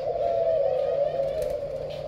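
Many caged spotted doves cooing at once, their overlapping coos merging into a continuous low, wavering drone.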